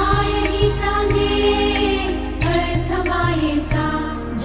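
Background music: a song with sustained melodic lines over a steady low beat.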